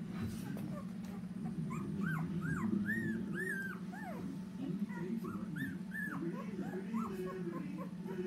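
Newborn Brittany puppies squeaking and whimpering: a run of about a dozen short, high squeals, each rising and falling in pitch, mostly through the middle seconds, over a steady low hum.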